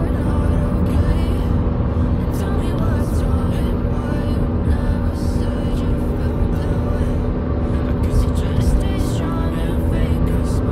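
Background music over the steady road and engine rumble of a car at highway speed, heard inside the cabin.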